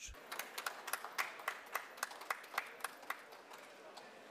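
A few people clapping, each clap heard separately, several a second; it thins out and dies away after about three seconds.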